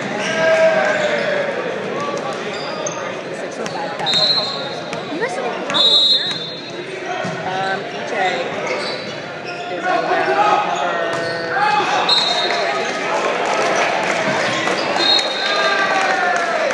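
Voices and chatter in a gymnasium, with a volleyball bouncing on the hardwood floor and several short high sneaker squeaks.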